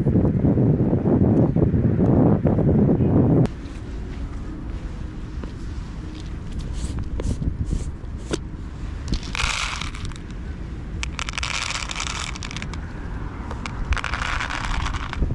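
Wind buffeting the microphone with a low rumble, which stops abruptly about three and a half seconds in. After that, dry cat kibble is poured from a plastic container into small plastic tubs in three short pours.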